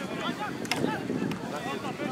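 Indistinct voices of players and onlookers at an outdoor football pitch, heard over wind noise on the microphone, with a couple of short sharp clicks in the first second.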